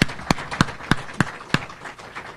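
Hand clapping close to a microphone: sharp, evenly spaced claps, about three a second, with fainter clapping behind them. The sharp claps stop about a second and a half in, and the rest fades.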